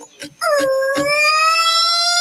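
A voice holds one long high note for about a second and a half, starting about half a second in and rising slightly in pitch, in a children's song heard through computer speakers.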